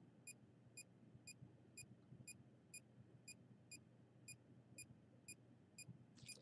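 Handheld electromagnetic field meter beeping faintly: short, evenly spaced high beeps, about two a second, its audible signal for the field reading it is taking.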